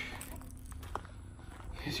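Low rumble of wind and handling noise on a hand-held phone microphone during a pause in talk, with a faint click about a second in.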